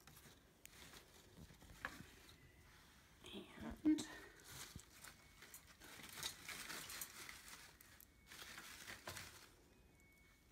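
Soft rustling and crinkling of artificial leaves and flower stems as they are pushed and rearranged by hand, coming in short bursts. There is a brief louder bump about four seconds in.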